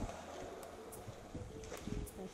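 Faint room noise with a low hum and a few light clicks and handling sounds.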